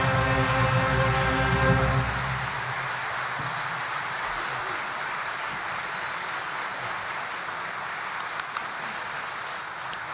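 An orchestra's final held chord cuts off about two and a half seconds in, leaving steady audience applause that fills the rest.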